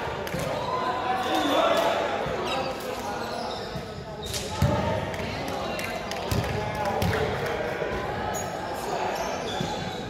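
Indistinct chatter of players' voices in a reverberant sports hall, with a few thuds of a ball bouncing on the wooden floor. The loudest thud comes about halfway through.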